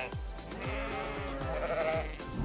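A sheep bleating, one long drawn-out call starting about half a second in, over background music with a steady beat.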